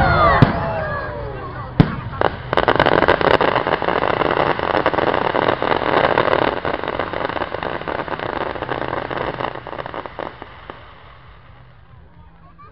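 Fireworks display: a few sharp shell bursts with whistling tones dropping in pitch at the start and another bang about two seconds in. Then a dense crackling of crackle stars goes on for several seconds and fades out about ten seconds in.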